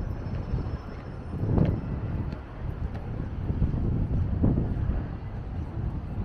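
Outdoor ambience dominated by low rumbling wind on the microphone, swelling in two gusts, about a second and a half in and again around four and a half seconds.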